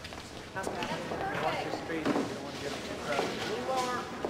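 Indistinct voices of several people talking in a large room, starting about half a second in; no words can be made out.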